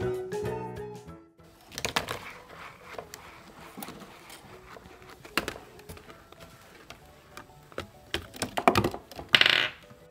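Background music that stops about a second in, followed by a marble running through a paper-and-cardboard roller coaster: irregular clicks and knocks as it rolls and drops through the paper track pieces, with a louder clatter near the end.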